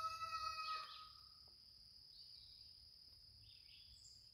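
A rooster crowing, its held call fading out about a second in. After that, quiet outdoor ambience remains with a faint steady high-pitched tone.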